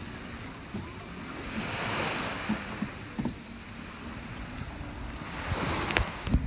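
Water washing against the hull of a small sailing catamaran under way, swelling about two seconds in and again near the end.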